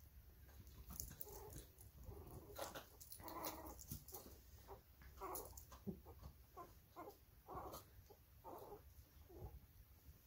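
Dog making a string of short, soft whines and grunts in play, irregularly spaced, with scattered faint clicks and rustling.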